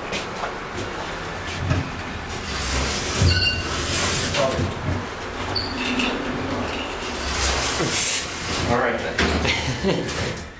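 A wheeled plastic mop bucket rumbles as it is rolled across a concrete garage floor, with scattered knocks. Near the end the elevator's sliding doors close.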